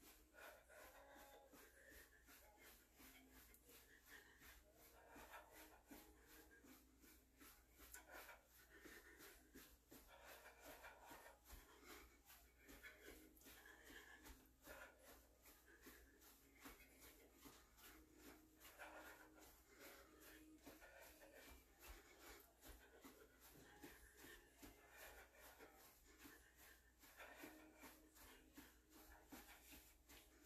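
Near silence, with faint hard breathing from a person doing cardio exercise.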